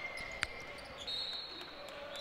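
Basketball game on a hardwood court: one sharp knock of the ball about half a second in, and thin high squeaks of sneakers on the floor, over steady arena crowd noise.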